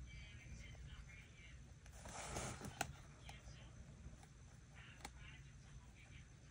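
Faint watercolour brush work on paper over a low room hum: a short soft swish about two seconds in, a sharp click just after, and another small click a little later.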